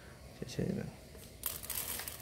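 Handling noise of dry bird-feed crumble and a metal tray: a light click, then about a second and a half in a short, dry rustling rattle as feed goes onto the tray.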